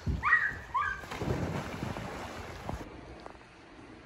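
Two short high-pitched squeals as someone goes down a plastic pool slide, then a splash into the pool about a second in, with water noise for under two seconds that cuts off abruptly to quiet room tone.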